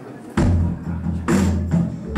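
Live swamp-blues rock band kicking in about a third of a second in, with low bass notes and drum and percussion hits falling roughly once every second.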